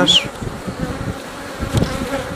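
Honeybees buzzing in a steady hum around a brood frame held out of an open hive.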